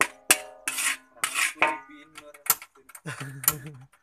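Metal spatula scraping and clanking against a metal wok as fried rice with egg is stirred, in uneven strokes with a few sharp clanks. There is no sizzle: the stove is not yet lit.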